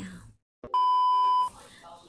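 A single electronic beep: one steady, high tone lasting under a second, the loudest sound here, coming right after a moment of dead silence.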